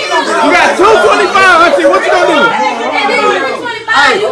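Several people talking at once, their voices overlapping into loud, unintelligible chatter.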